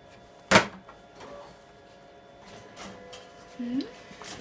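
A single loud, sharp snap about half a second in: the finisher cover of a Kyocera 5551ci copier being shut, which clears the copier's cover-open warning. A brief voice sound near the end.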